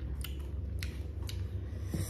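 Crunchy raw green mango being chewed: crisp crunches, about four in two seconds, over a low steady hum.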